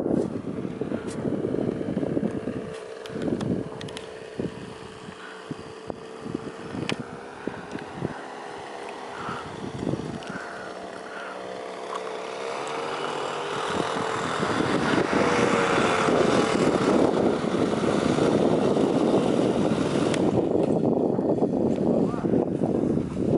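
Paramotor, the backpack propeller engine of a powered paraglider, droning as it flies in low, its pitch wavering and its sound growing much louder past the middle as it passes close. It eases off shortly before the end as the pilot touches down.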